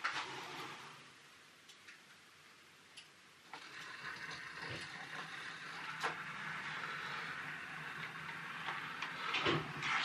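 Faint, steady whirring of small electric motors with a few light clicks, starting about three and a half seconds in: an OO gauge model railway's automatic engine-shed roller door opening and model locomotives running slowly into the shed.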